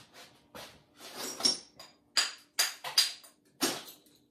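Glaze-fired ceramic mugs being handled out of a kiln: an irregular series of sharp clinks of glazed pottery against pottery, some ringing briefly.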